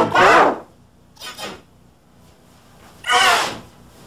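A child's loud wordless screams during a tantrum, in short falling wails: one right at the start, a faint brief one about a second in, and a strong one a little after three seconds. The voice is layered and pitch-shifted by the 'G Major' edit effect, which makes it sound warbled and doubled.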